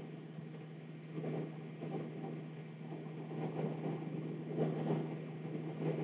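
Steady low hum, with faint soft scratches and rustles from a pen moving up graph paper as a point is counted out and plotted.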